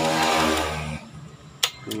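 A steady pitched drone with a hiss over it, which stops about a second in. Then a single sharp metallic click as the gear selector of the open Suzuki Smash Titan gearbox is shifted into the next gear.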